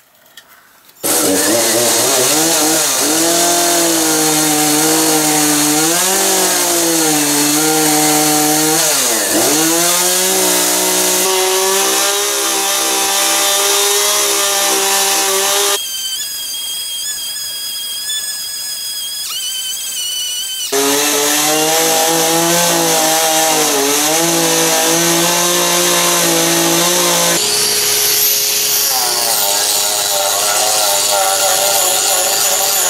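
A two-stroke gas chainsaw runs under load while cutting into a wooden block. Its pitch dips sharply and recovers about nine seconds in. In the middle, a few seconds of a higher-pitched tool whine take its place. Near the end comes the steady whine of an angle grinder with a carving disc.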